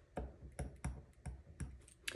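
Light clicks and taps from hands handling paper bills and a clear plastic cash-envelope binder: about six faint, short clicks, unevenly spaced.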